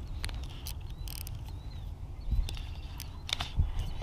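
Baitcasting reel being handled and adjusted: a handful of scattered sharp clicks and knocks over a steady low rumble.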